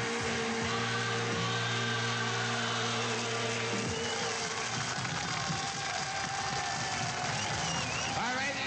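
Rock and roll band holding the final chord of a song, which stops about four seconds in. A steady noisy wash with a few faint sliding tones follows.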